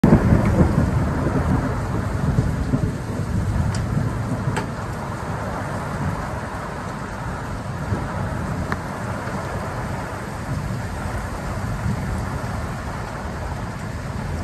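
Heavy thunderstorm downpour: steady hiss of hard rain on pavement and cars, under a low rumble of thunder that is loudest at the start and fades over the first few seconds.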